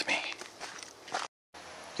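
Faint footsteps of a person walking on a dirt forest trail, a few soft uneven steps. The sound drops out briefly about two thirds of the way through.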